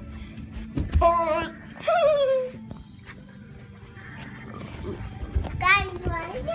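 A child's voice making a few short sounds without clear words, about one and two seconds in and again near the end. Dull knocks come from the handheld phone being jostled.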